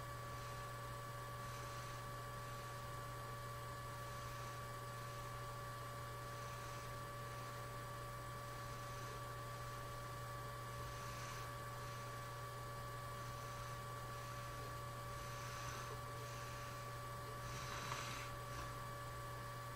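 Steady low electrical hum from the recording setup, with thin steady tones and an even hiss over it. A brief soft noise near the end.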